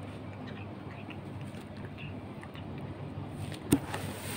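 Quiet steady room noise with a few faint small sounds, and one sharp knock a little before the end.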